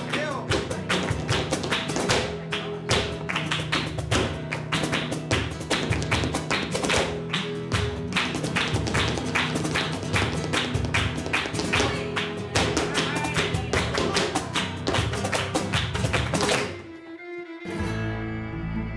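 Flamenco music, a guitar with a dancer's rapid footwork taps (zapateado) rattling over it. The music stops abruptly about a second before the end.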